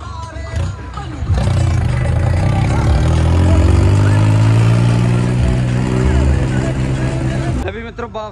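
Tractor diesel engine revving up about a second in and held at high revs as a steady drone for about six seconds, then cut off suddenly near the end.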